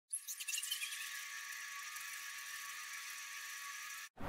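High, thin shimmering sparkle sound effect for an animated logo. It opens with a few quick tinkling pips in the first second, then settles into a steady high hiss that cuts off suddenly.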